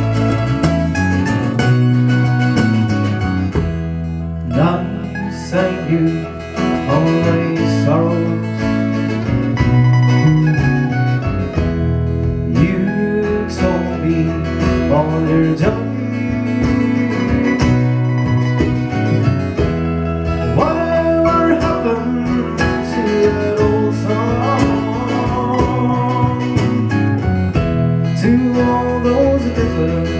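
Live Irish ballad band playing a slow song: acoustic guitar and mandolin over electric bass, with a bodhrán beaten with a tipper.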